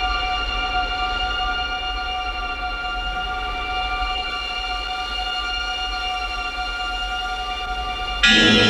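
A sustained, unchanging drone of several held high tones over a low rumble, as in an eerie film-trailer score.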